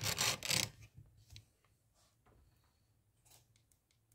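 A magazine being slid and straightened by hand on a wooden tabletop: a brief scraping rustle in the first second, then a few faint taps.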